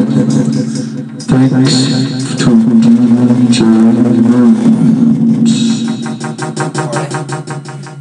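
Loud dance music mixed live on a DJ controller, with a vocal line over a steady bass line. The track lifts suddenly about a second in, and a fast, even beat comes to the fore over the last few seconds.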